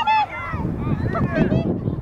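Several high-pitched voices shouting and calling out over one another, with a loud shout right at the start.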